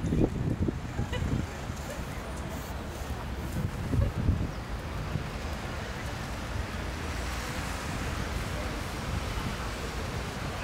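Waterfront city ambience: a steady wash of wind and water noise with a low rumble, and wind buffeting the microphone. It is loudest in low bursts at the very start and about four seconds in.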